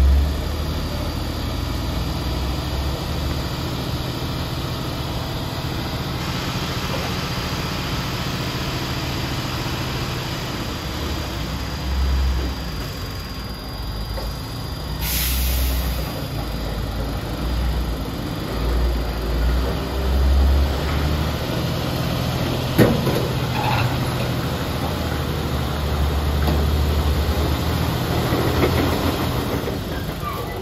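Diesel engine of a MAN tractor unit labouring under the heavy load of a crawler crane on a lowboy trailer, swelling in repeated low surges as the truck struggles up a steep hairpin. A short hiss of air comes about halfway through, and a sharp click comes later.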